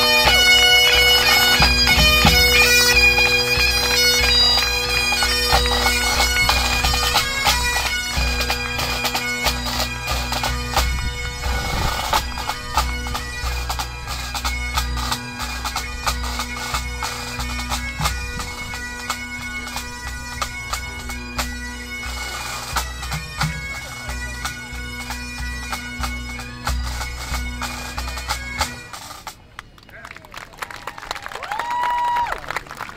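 Full pipe band of Highland bagpipes and drum corps playing the closing reel of a March, Strathspey and Reel set: steady drones under the chanters' fast melody, with bass drum and snare drums. The band stops together about 29 seconds in and the drones die away.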